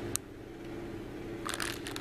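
Clear plastic packaging crinkling as it is handled: one sharp click just after the start, then a burst of crinkling near the end, over a steady low hum.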